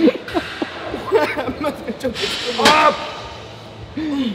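People's voices without clear words: laughter and strained vocal sounds from a man pushing through a leg extension set, in a few short bursts, with a sharp click about two seconds in.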